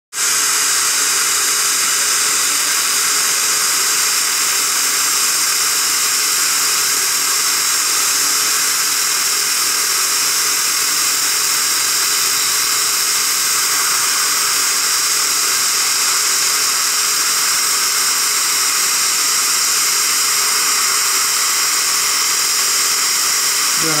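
Steady, unbroken hiss of dental treatment at the chair: an Er,Cr:YSGG water laser (Waterlase) running with its air-water spray, together with suction.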